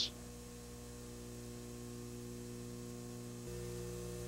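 Steady electrical mains hum with faint hiss, growing slightly louder and fuller about three and a half seconds in.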